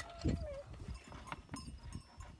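Hand churning of curd with a rope-pulled wooden churn in a metal pot: low knocks and scattered clicks. A long wavering animal call, begun just before, fades out about half a second in.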